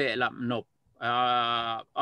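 A man's voice over a video call: a short spoken phrase, a brief pause, then one drawn-out vowel held at a steady pitch for about a second, like a hesitation sound.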